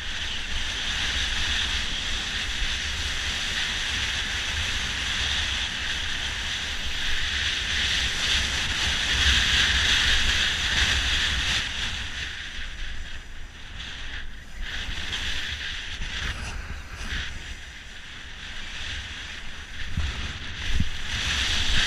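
Skis hissing and scraping over groomed snow, with wind buffeting the microphone of a camera worn by a skier heading downhill. The hiss eases and becomes uneven in the second half.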